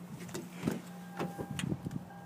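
Light clicks and knocks over a low steady hum, with a faint steady high tone coming in about a second in.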